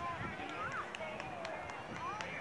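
Faint voices of people some way off, with low background chatter.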